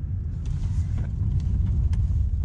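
Low, steady rumble of a Mercedes-Benz car heard from inside its cabin as it rolls slowly, with a few faint light ticks.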